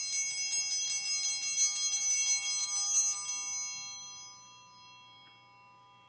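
Altar bells (sanctus bells) shaken rapidly for about three seconds, then left to ring on and fade away. They are rung at the elevation of the chalice during the consecration.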